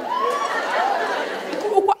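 Studio audience laughing and reacting, many voices overlapping in a large hall.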